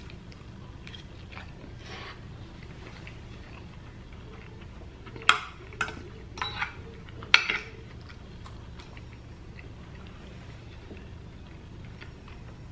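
Close-miked chewing of a mouthful of taco lasagna, with a few sharp clicks and scrapes about five to seven and a half seconds in as a metal fork cuts into the lasagna in its glass baking dish.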